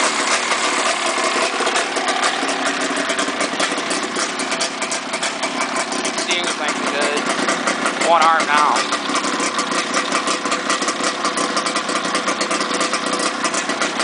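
Yamaha 540 two-stroke twin snowmobile engine idling steadily; the engine still has an exhaust leak. A short wavering sound, louder than the engine, comes about eight seconds in.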